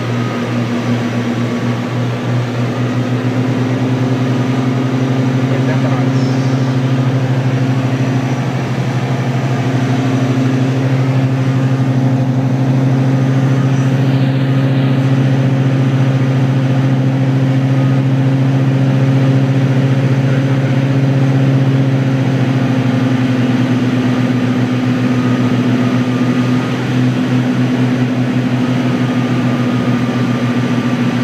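Piper Seneca III's two turbocharged six-cylinder piston engines and propellers droning steadily inside the cockpit on final approach. The two engines are slightly out of sync at times, giving a throbbing beat near the start and again late on.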